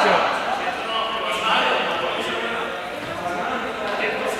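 Several young people's voices calling out and chattering over one another, echoing in a large gymnasium.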